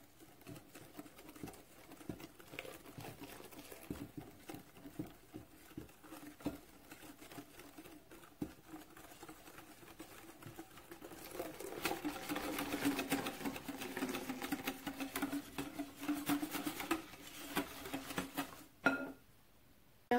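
Wire whisk beating against a glass bowl, a fast run of light clicks, while hot milk is poured into whisked egg yolks and sugar to temper them for pastry cream. The whisking gets louder a little past halfway and stops shortly before the end.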